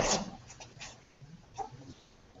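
Close-range sparring between two martial artists: one loud, sharp, breathy burst at the start, then a few softer short slaps and scuffs as hands meet and feet move.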